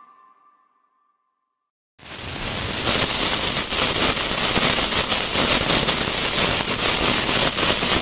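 Animated bomb-fuse sound effect: a loud, steady, crackling hiss of a burning fuse that starts about two seconds in and cuts off suddenly at the end. Before it, the tail of a music sting fades out into silence.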